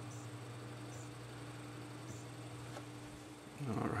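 Quiet room tone: a steady low electrical hum with a few faint, brief high ticks.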